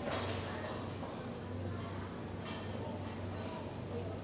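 A paper towel rustles as small citrus fruits are wiped dry by hand, with a brief burst at the start and another about two and a half seconds in, over a steady low hum.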